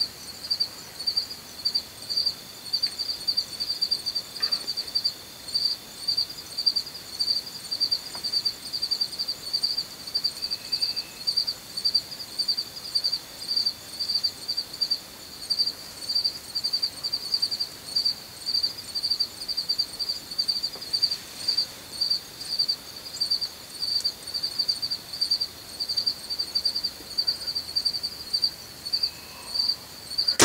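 Insects calling in a steady pulsing chorus, about two to three high-pitched pulses a second, over a fainter continuous insect trill.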